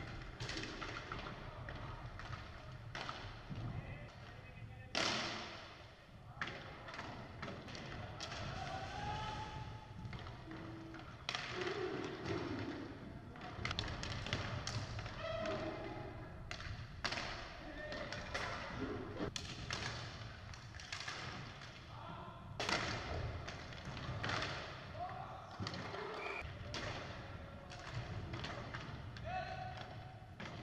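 Live game sound of inline hockey in a large hall: sharp knocks and thuds of sticks and puck on the wooden floor and boards, scattered through the play and loudest about 5 s and 23 s in. Short calls and shouts from players come in between.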